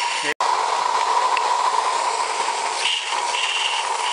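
Live-steam garden-railway locomotive hissing steadily with steam. From about three seconds in, short, higher hisses come and go on top of the steady hiss.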